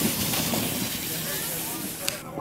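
Plastic sled sliding and scraping over snow with a steady hiss of snow spraying; the noise cuts off sharply near the end.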